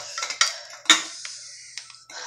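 Eating utensils clinking and scraping against bowls as noodles are eaten, with sharp clinks about half a second and about a second in.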